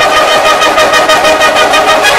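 Marching band holding a sustained brass and woodwind chord over a rapid, even percussion pattern of about eight or nine strokes a second.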